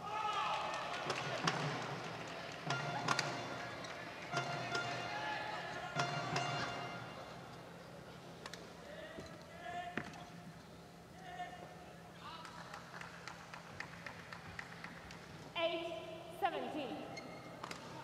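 Badminton rally: sharp racket strikes on the shuttlecock every second or two, over crowd voices and shouts in the arena.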